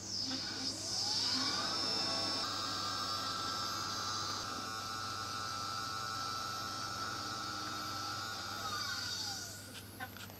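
Motorised GoTo telescope mount slewing to an alignment star. Its motors whine upward in pitch over the first second or two as the mount speeds up, hold a steady high whine, then wind down in pitch near the end as it slows to a stop.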